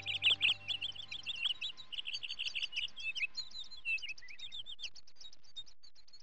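Birds chirping and twittering, a dense run of quick high chirps from several birds at once. A held music chord fades out under them in the first second.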